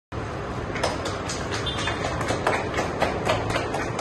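A few people clapping by hand in a steady rhythm, about four claps a second, over a low background rumble.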